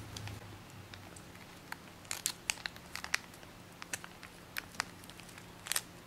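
Origami paper being folded and creased by hand: an irregular scatter of short, sharp paper crackles and rustles, starting about a second and a half in, busiest around two seconds in and again near the end.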